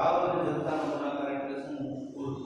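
A man's voice holding one long, drawn-out, chant-like vowel at a nearly steady pitch that sags slightly. It starts suddenly and lasts about two seconds.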